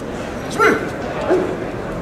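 Two short, high shouted calls from a person, about half a second and a second and a quarter in, over steady background noise.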